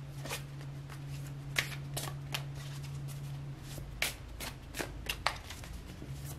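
Tarot cards being shuffled and handled: a scattering of light, irregular snaps and taps.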